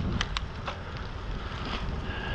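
Wind buffeting an action camera's microphone on a moving bicycle, over a steady low rumble of tyres on asphalt. Three sharp ticks come in the first second.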